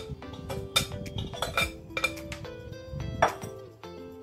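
Background music with steady notes, over several clinks and knocks of a bowl against a metal pressure cooker as marinated meat is emptied into it. There is a louder knock about three seconds in.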